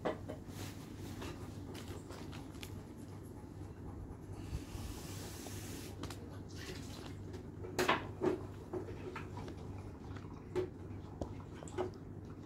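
Handling noises as plush toys and packaging are moved: scattered soft knocks and clicks, a brief rustle about halfway through, and two sharper knocks a little later, over a low steady hum.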